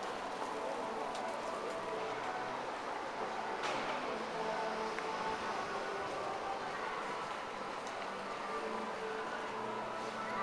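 Outdoor shopping-precinct ambience: indistinct voices in the background over a steady urban hum, with a sharp click a little over three and a half seconds in.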